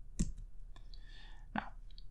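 A single sharp click about a quarter of a second in, from the lecture's slide being advanced on the computer. The word "Now" is spoken near the end.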